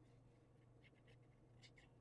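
Near silence: room tone with a few faint, brief scratches from a fine-tip glue bottle drawn along the edge of a paper card.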